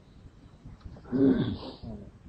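A single short vocal sound, pitched and breathy, lasting under a second about a second in; not words.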